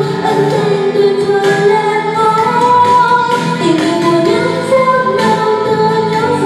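A woman singing a Vietnamese pop ballad cover in long held notes over backing music.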